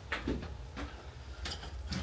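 A quiet room with a steady low hum and a few faint clicks and knocks as a camera is handled.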